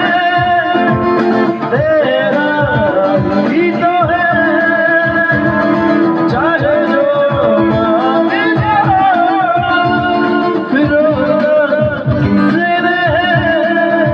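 Live singing into a microphone over a strummed acoustic guitar: a solo voice carries long, wavering melodic lines while the guitar keeps a steady strum underneath.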